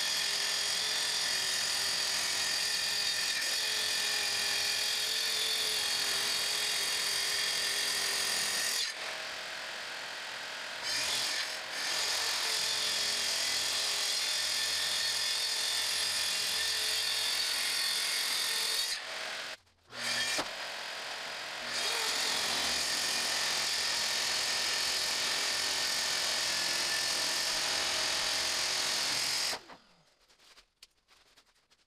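Track saw running and cutting along its guide rail through the slab tabletop, a steady loud high whine. The level drops for a few seconds about a third of the way in, cuts out for a moment about two-thirds in, and the saw stops just before the end.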